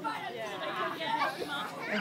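Overlapping chatter of several voices, many of them children's, with no single speaker standing out.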